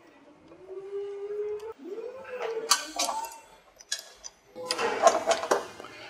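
Toothed rubber drive belts being worked onto the metal pulleys of a conveyor drive shaft by hand, with a few light clicks and rubbing. A low, wavering hum-like tone runs through the first half.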